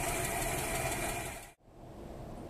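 Ford Aero Willys six-cylinder engine idling steadily. The sound cuts off abruptly about one and a half seconds in, leaving faint background.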